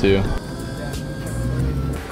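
Steady low rumble of a car's engine and road noise heard inside the cabin.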